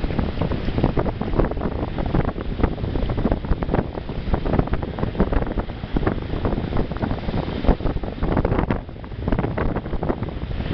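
Wind buffeting the microphone in irregular gusts over the steady wash of ocean surf breaking on and flowing across a rock shelf.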